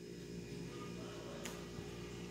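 Quiet room tone: a faint steady low hum, with a single soft click about one and a half seconds in.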